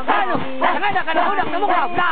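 A group of voices calling out together in short, overlapping yelps and shouts that rise and fall in pitch, one after another with no pause, in the middle of communal singing at a rice harvest.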